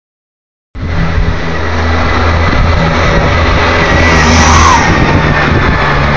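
Golf cart motor running steadily, with a low hum and a faint high whine, starting suddenly under a second in.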